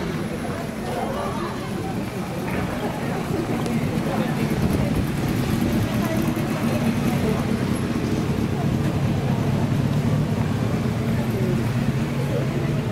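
Busy street ambience: passers-by chattering among slow traffic, with a low steady engine hum that grows louder from about four seconds in as a city bus draws near.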